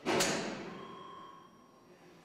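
A sudden loud thud just after the start, dying away over about a second and a half, with a faint ringing tone in its tail.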